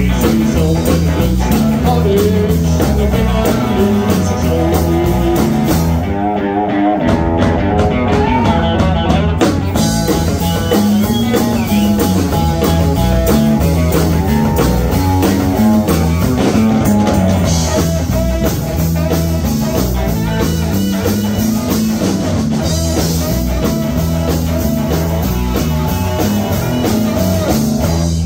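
Rockabilly band playing live, with drums, electric guitar and saxophone over a steady beat. About six seconds in the bass drops out for a moment and the cymbals fall away for a few seconds before the full band comes back.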